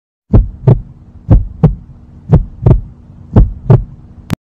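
Heartbeat sound effect: four double thumps (lub-dub), about one pair a second, over a faint steady low hum.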